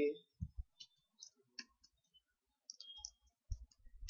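Computer keyboard being typed on: scattered, irregular key clicks.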